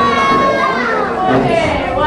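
A crowd of young children shouting and chattering excitedly all at once, many high voices overlapping.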